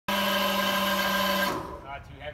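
Scissor lift's motor running with a steady whine, then cutting off abruptly about a second and a half in; a voice follows briefly.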